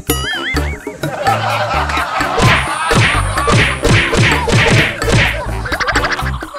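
Comedic background music with added cartoon sound effects: a warbling wobble tone in the first second, then a quick run of whack hits, about two to three a second.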